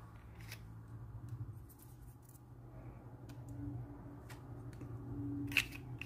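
Faint clicks and light handling noises of small model parts and hobby tools on a workbench, with a slightly sharper click near the end, over a steady low hum.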